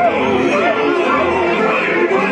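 Dark-ride show audio: recorded pirate voices and chatter from the animatronic scenes over background music.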